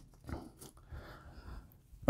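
Faint rustling and soft taps of a stack of trading cards being squared up by hand on a tabletop, a few short scattered sounds.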